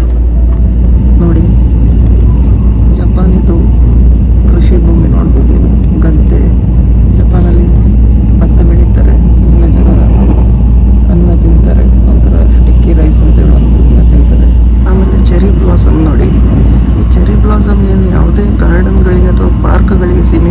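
Steady low rumble of a limited express train running at speed, heard from inside the carriage, with indistinct voices over it.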